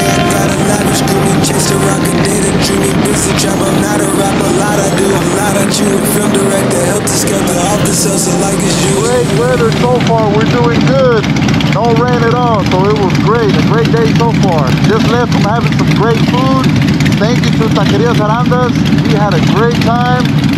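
Harley-Davidson V-twin motorcycle engine running with music laid over it. From about halfway through, a steady low engine hum continues under a pitched, rising-and-falling voice with no clear words.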